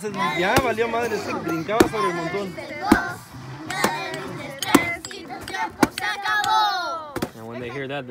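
A wooden stick hitting a hanging piñata about once a second, seven sharp whacks, over children's voices and chatter.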